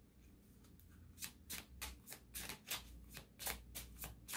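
A deck of cards being shuffled by hand: quiet for about the first second, then a run of crisp card slaps, about three a second.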